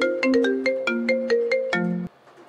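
Mobile phone ringtone playing a quick melody of short, bright notes, about five a second.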